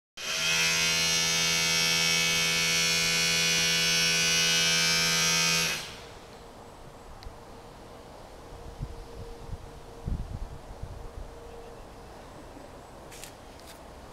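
Electric power drill running at a steady speed with a high motor whine, then stopping about six seconds in. A few dull thuds follow.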